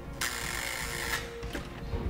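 Electric door-release buzzer buzzing for about a second, the lock being released to let someone in, followed by a fainter steady hum.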